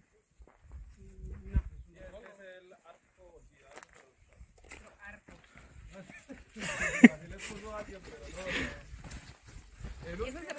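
Indistinct, low chatter of a group of hikers, with one sharp, loud knock about seven seconds in.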